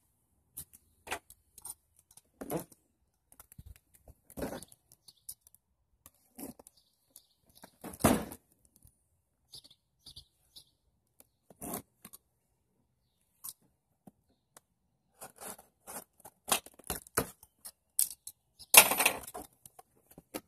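A cardboard box being cut and opened by hand: scattered scrapes, small knocks and tearing of the box cutter through packing tape and card. A louder rustling tear comes near the end as the flaps are pulled open and the contents slid out.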